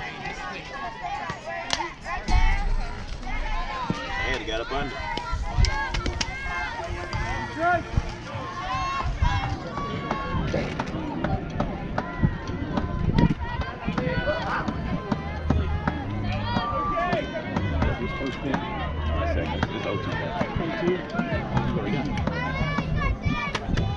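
Overlapping chatter of spectators and players around a softball field, with a few sharp knocks.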